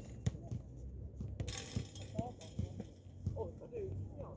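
Pickup basketball game on an outdoor court: irregular thumps of play on the court surface, with players' faint calls about two and three seconds in and a brief hiss near the middle.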